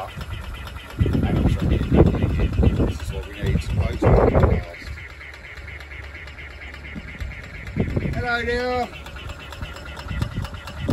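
A 12 V Whale Gulper diaphragm waste pump running steadily, drawing toilet waste from a narrowboat's holding tank into a drum. Loud bursts of rough noise fill the first few seconds, and a duck quacks once near the end.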